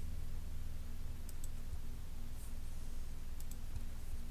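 Faint computer mouse button clicks in two quick pairs, about a second in and again near the end, over a steady low hum.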